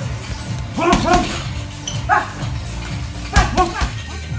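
Several hard punches landing on a heavy punching bag, each with a short, sharp shout or grunt from the boxer, over background music with a steady beat.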